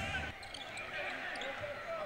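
Game sound from a basketball arena: a low, steady crowd murmur and court noise with a few short, faint high squeaks.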